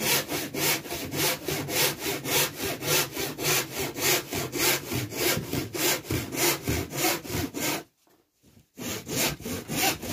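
Hand sawing with a small, fine-toothed panel saw (about 11 teeth per inch) cutting through MDF, in quick, even strokes of about four a second. There is a pause of just under a second near the end before the strokes start again.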